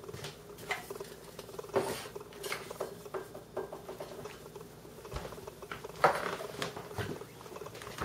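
Bottles and containers being handled in a kitchen cupboard: irregular light taps, clinks and rustles as they are moved about, over a faint steady hum.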